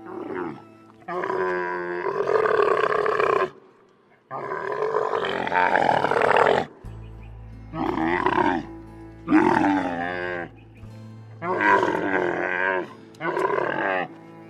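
Camel calling in a series of about six long, loud, groaning calls with short pauses between them, over soft background music.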